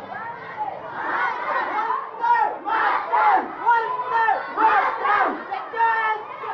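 A large crowd of schoolchildren shouting slogans together as they march, many voices rising in loud surges about once a second.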